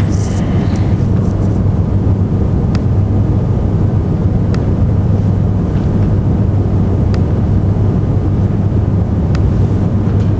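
Steady low hum and rumble of room noise, with a few faint clicks scattered through.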